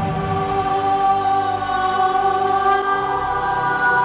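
Choral music: a choir singing long, held notes in slow chords, changing chord near the end.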